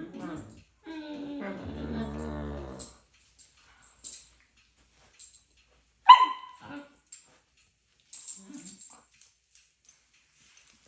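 A borzoi gives one short, high bark about six seconds in that drops steeply in pitch. A brief low grumble follows a couple of seconds later.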